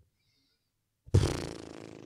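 About a second in, a sudden buzzy rasp starts and fades away over about a second.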